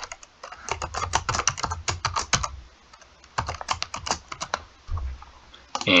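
Typing on a computer keyboard: a password entered as two quick runs of keystrokes with a short pause between them.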